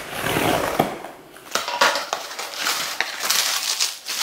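Cardboard parcel being opened by hand: tearing and crinkling of cardboard and packaging, as a run of scratchy rustles and crackles with a brief lull a little over a second in.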